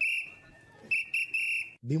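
A whistle blown in short, shrill blasts: one at the start, then three quick blasts about a second in.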